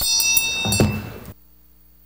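Small brass hand bell ringing to close the session, its ring fading, with a short low knock just before the sound cuts off suddenly about a second and a half in, leaving a faint steady hum.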